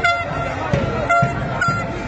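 Protest march: short honking horn toots, repeated about every half second, over a drumbeat and the noise of the marching crowd.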